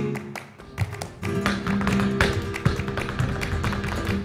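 Flamenco guitar playing a bulería, with sharp percussive strikes from the dancer's shoes on the stage floor and hand claps (palmas) over it. The music dips briefly about half a second in, then the guitar and strikes come back.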